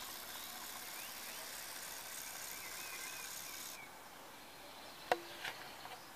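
Quiet outdoor ambience: a faint steady hiss with a few faint distant bird chirps. The hiss drops away a little before four seconds in, and there is a single short click near the end.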